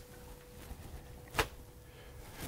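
Quiet room with a faint steady hum and one sharp click about one and a half seconds in.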